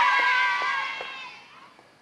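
A group of children shouting and whooping together, the cries fading away over the first second and a half, with footsteps on pavement.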